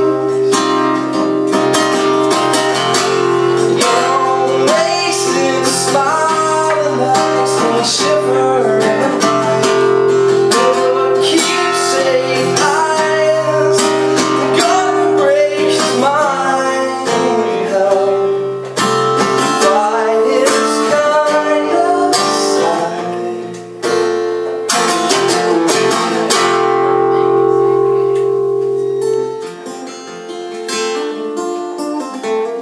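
A man singing to his own strummed acoustic guitar; near the end the voice drops out and the guitar strums on alone.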